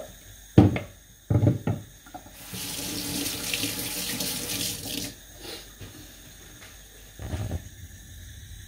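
A few knocks, then a water tap runs into a sink for about two and a half seconds and is turned off.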